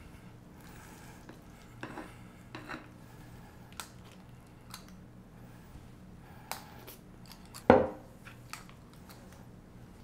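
Metal squeeze-lever portion scoop working through chilled risotto and releasing mounds onto a silicone-lined baking sheet: quiet scattered clicks and scrapes from the scoop's lever, with one louder knock about three quarters of the way through.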